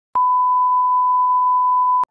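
A 1 kHz reference test tone that goes with colour bars: one steady, unwavering pure beep that starts a moment in and cuts off abruptly.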